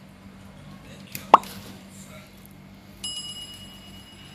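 Sound effects of an on-screen subscribe animation: a single quick pop about a second in, then a bright bell ding about three seconds in that keeps ringing.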